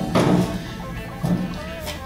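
Background music, with a clunk near the start as a steel shovel is set down on a workbench, then softer knocks as another shovel is picked up.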